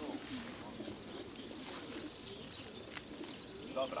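Many racing pigeons cooing together inside a pigeon transport truck, a steady mass of overlapping coos. A few higher chirps come near the end.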